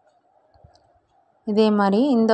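Near silence with a few faint, soft knocks from plastic craft wire being handled and knotted, then a voice starts speaking about a second and a half in.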